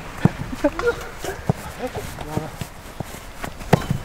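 Soccer balls being kicked on volleys and bouncing on artificial turf: a series of sharp thuds, the loudest near the end, with quiet voices in between.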